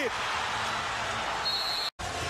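Arena crowd noise, a steady wash of voices, just after a made three-pointer. A brief high-pitched tone sounds near the end, then the sound cuts off abruptly at an edit.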